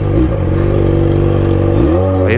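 Yamaha XJ6's 600 cc inline-four, running through a straight pipe with no muffler, loud and ridden at low, steady revs. The revs dip briefly at the start and climb again near the end.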